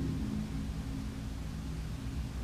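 Steady hiss and low rumble of background noise in a live room recording. A low held tone fades out in the first half second.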